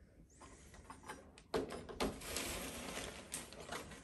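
Wooden stir stick stirring thick primer in a gallon paint can, faint scraping and small knocks of the stick against the can, growing to a steadier rasp after about a second and a half.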